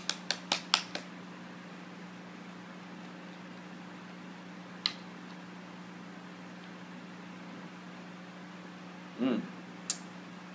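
A small bottle of hot sauce shaken hard between the hands, a quick run of sharp knocks about five a second that stops about a second in. After that a steady low hum, with a single click near the middle as the bottle's cap is worked open.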